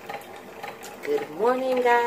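A woman's voice: after about a second of quiet room sound, one long, drawn-out vocal note rises in pitch and then holds, like a sung-out greeting.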